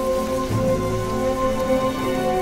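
Background music of long held chords over a dense, rain-like rustle of a desert locust swarm in flight.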